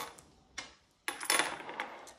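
Coins dropped through the slot of a piggy bank, clinking as they land: the tail of one clatter at the start, then a second clatter of several quick clinks about a second in.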